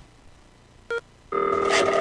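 Mobile phone ringtone: a short beep just under a second in, then a steady electronic ring starting about a second and a half in.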